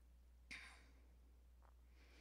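Near silence with a low steady hum, broken about half a second in by one brief, faint breath from a woman.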